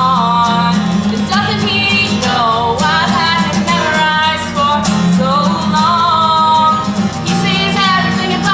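A woman singing a song, accompanying herself on a strummed acoustic guitar.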